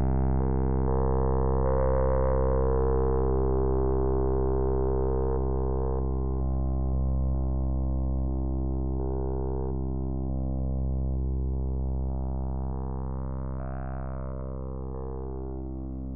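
Electronic synthesizer music: a sustained drone of steady low tones, with a tone sweeping up and back down near the end, slowly getting quieter.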